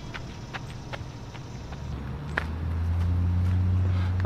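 Light footsteps on a gravel path, a few irregular taps a second, for the first two seconds. Then a steady low rumble sets in, with one sharp click about two and a half seconds in.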